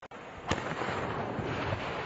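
Explosive charges blasting open a dam embankment: a sharp bang about half a second in, then a continuous rumbling noise with a few smaller cracks.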